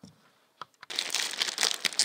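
Thin plastic packaging bag crinkling as hands open it and work inside it, starting about a second in after a couple of faint clicks.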